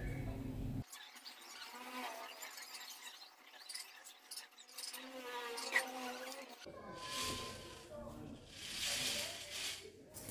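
Quiet handling of a sheer curtain on a ceiling curtain track: small clicks as its metal hooks go onto the plastic runners, and short bursts of fabric rustle near the end, with faint voices in the background.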